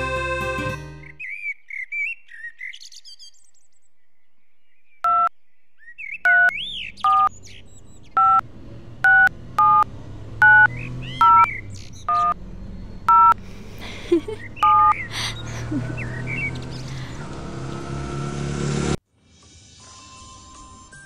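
Mobile phone keypad beeps: about eleven short, identical beeps, roughly a second apart, as a text message is typed, with birds chirping around them. Instrumental music ends about a second in. Near the end a rising swell of noise cuts off abruptly.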